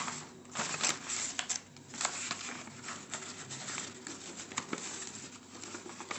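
A sheet of paper rustling and crinkling in the hands as it is wrapped and rolled into a cone, in irregular bursts with short sharp crackles.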